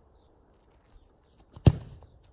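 A football kicked hard once, a single sharp thud about one and a half seconds in with a brief ring-off, against otherwise quiet outdoor background.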